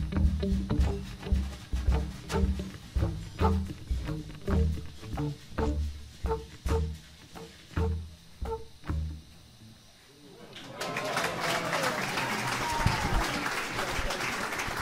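Live jazz band playing the closing bars of a bossa nova, the upright bass prominent. The music dies away about ten seconds in, and the audience breaks into applause and cheers.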